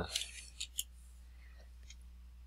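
A few faint, short clicks of computer keys and a mouse button as a number is typed in and entered, mostly in the first second.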